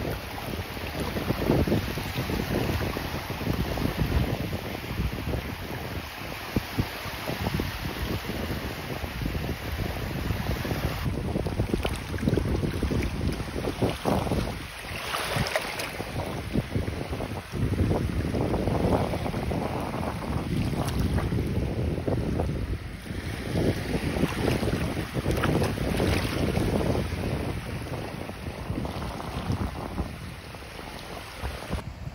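Wind buffeting the microphone over small waves lapping in shallow sea water. About halfway through there is splashing as a hand reaches down into the water.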